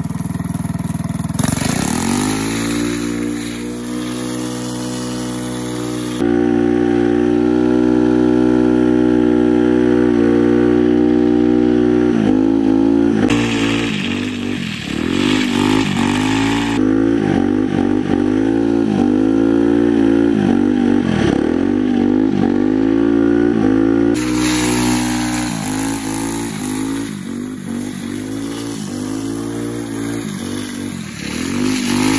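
Go-kart engine at high revs, held steady for several seconds, then surging up and down about once a second as the kart drifts on metal sleeves over its rear tyres, the sleeves scraping on the asphalt.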